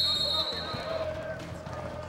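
A coach's whistle blows one short, shrill blast of about half a second at the start, then fades. Indistinct shouting voices carry on through the rest.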